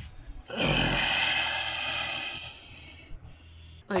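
A person's long breathy exhale, beginning about half a second in with a short low grunt that drops in pitch, then fading out over about two and a half seconds.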